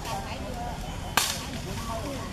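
A single sharp crack a little over a second in, over an outdoor background with faint wavering, chirp-like calls.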